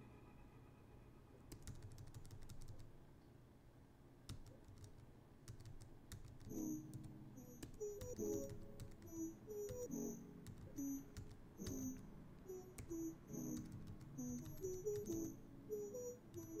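Quiet computer keyboard keystrokes tapped one at a time at irregular intervals. Soft background music with short, plucked-sounding notes comes in about six seconds in.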